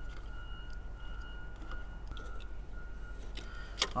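Quiet background with a steady low hum and a faint, thin high whine, with a few light clicks from wires being handled and twisted together.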